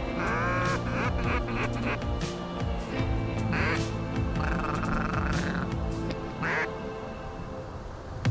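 Mallard duck call blown in loud quacks, then a quick run of short chuckling notes and further bursts of calling, over music with steady low notes.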